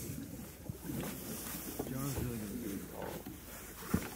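Indistinct low voices talking over a steady hiss, with a single sharp knock near the end.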